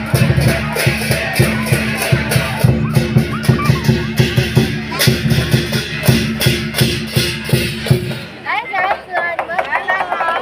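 Chinese lion dance percussion: a large barrel drum with clashing cymbals beating a fast, steady rhythm, which stops about eight seconds in. Crowd voices follow.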